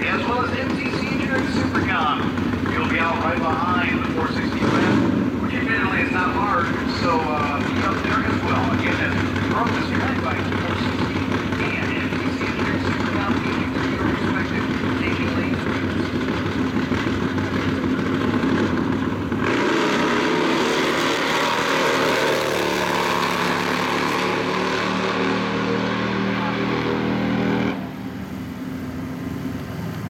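Pro Fuel drag motorcycle engine running on the start line for about 19 s. It then launches into a full-throttle pass, its pitch climbing for about 8 seconds, before the sound falls away abruptly near the end.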